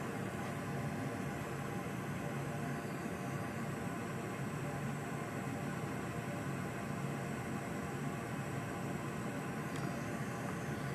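Steady low hum with an even hiss, unchanging and with no distinct clicks or knocks.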